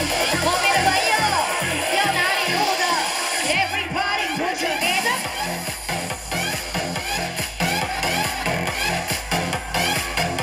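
Electronic dance music mixed live by a DJ and played loud over a stage sound system, with a steady bass beat and sliding vocal and synth lines on top. The low beat drops out about three and a half seconds in and comes back strongly about five seconds in.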